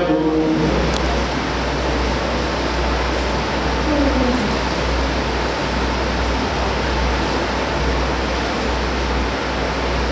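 Steady, even hiss with a low hum underneath: the room noise of a crowded mosque prayer hall while the congregation is silent between recitations.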